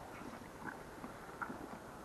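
Welsh Black cattle feeding on haylage, heard faintly: a few soft, short munching sounds.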